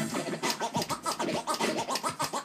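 Vinyl record scratched by hand on a Technics turntable through a Pioneer DJM-400 mixer. It makes rapid back-and-forth pitch glides, chopped into short strokes by the crossfader.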